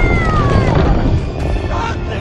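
Trailer sound design: a heavy low rumble of destruction under music, with a long screech that falls in pitch through the first second.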